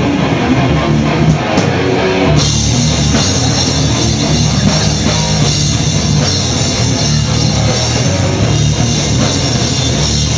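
Hardcore punk band playing live and loud: distorted guitar over a drum kit. About two seconds in, the sound gets fuller and brighter at the top, as the cymbals come in.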